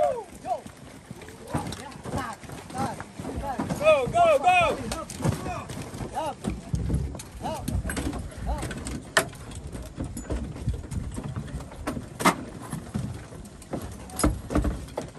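Footsteps on dry dirt and gear knocking as soldiers in kit run to a helicopter and climb aboard, with short shouted calls about four seconds in. Two sharp knocks stand out later, near 9 and 12 seconds.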